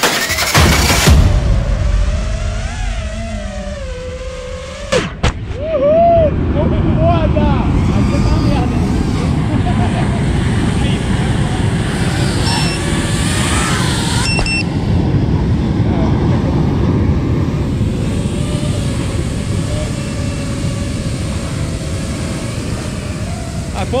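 Loud, steady wind rushing on the microphone of a camera lying in the grass, with faint voices in the background. The end of a music track is heard first, and a sharp knock comes about five seconds in.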